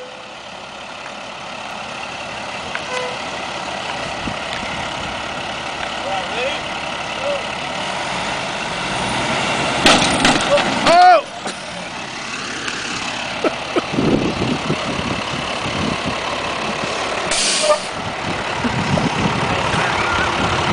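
A wildland fire engine's diesel engine running and growing steadily louder as it works to pull a stuck fire engine free, with people's voices shouting over it, loudest about halfway through. A short hiss comes near the end.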